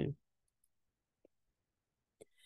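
Near silence in a pause between spoken announcements, after the last word dies away, broken only by one faint, short click a little over a second in.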